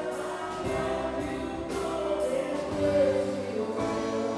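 Live rock band playing a song: sung vocals over electric guitars, keyboard and a drum kit, with cymbal strokes about twice a second.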